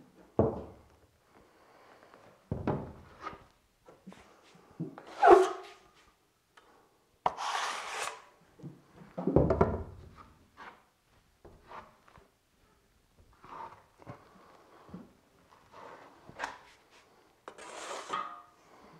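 Steel drywall trowel spreading joint compound on a wall, scraping now and then against the hawk as mud is loaded. The strokes come one at a time with short pauses, the loudest about five and eight seconds in.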